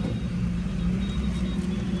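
Mahindra Bolero SLX DI diesel engine running, a steady low rumble with a constant hum, heard from inside the cabin.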